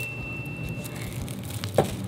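A chime sound effect's high ringing tone fades out about a second in, over soft crinkling and rustling of plastic piping bags of icing being handled and swapped on a table.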